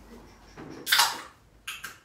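A sharp clatter about a second in, then two quick clicks near the end.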